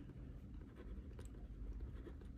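Faint sound of a ballpoint pen writing on notebook paper: light strokes and scratches as words are written.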